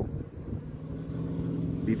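A motor vehicle's engine running with a steady low hum that slowly grows louder, over low wind rumble.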